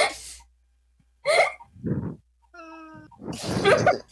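Short separate bursts of a person's voice, laughing and squealing, with a pause of near silence after the first and a brief steady pitched note just before the last and loudest burst.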